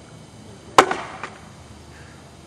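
An axe biting into a vertical standing block of wood once, a single sharp chop a little under a second in, with a short tail as it dies away.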